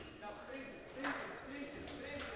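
Faint handball-court ambience in a large indoor sports hall: distant players' voices calling out over a low, echoing room hum.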